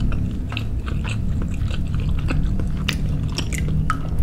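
Close-miked chewing of a mouthful of baso suki (soft meatballs and fish balls in broth) with the mouth closed: soft, wet, irregular mouth clicks and squelches.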